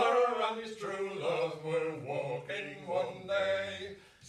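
Three men singing a folk song together, unaccompanied, in sustained sung phrases.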